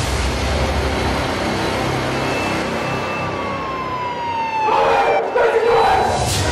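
Crime-show intro soundtrack: a deep boom opens it, a siren-like tone glides slowly downward over a couple of seconds, and a dense flurry of noisy hits comes near the end.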